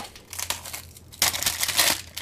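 Thin plastic wrapping crinkling and tearing as it is pulled off by hand. It is faint for about the first second, then louder in the second half.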